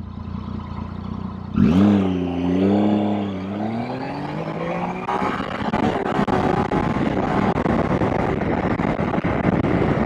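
Triumph Tiger 800 XRX's three-cylinder engine idling, then opened up hard about one and a half seconds in for a full-throttle 0–100 km/h run. The engine note climbs and drops back at each quick upshift. Wind rush builds as the speed rises.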